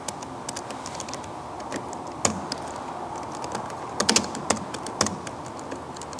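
Typing on a computer keyboard: a run of irregular keystrokes, with a few harder key presses about two, four and five seconds in.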